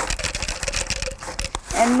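Dry bean seeds pouring from a paper seed packet into a plastic cup: a quick, dense rattle of many small clicks that thins out near the end.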